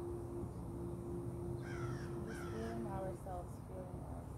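Two short, harsh bird calls, slightly falling in pitch, near the middle, typical of a crow cawing. Faint voices sound in the background, and a steady low hum stops about three seconds in.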